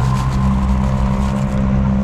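Steady low hum of an idling motor vehicle engine, with a faint higher tone held above it.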